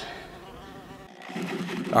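Yellow jackets buzzing around their exposed nest, a steady low hum. About a second in it breaks off and a louder, rising noise builds.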